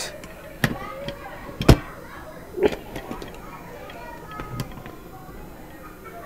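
A few sharp metal clicks and knocks from lock parts being handled and seated as a lever lock's chassis and cylinder housing are fitted back together by hand. The loudest comes under two seconds in.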